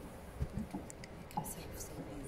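Faint, low voices murmuring, with a few soft knocks and rustles, one about half a second in and another just after a second.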